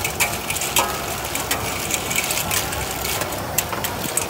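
Clams in their shells clattering and rattling against a large aluminium wok as a metal spatula scrapes and stirs them, an irregular run of sharp clicks and scrapes.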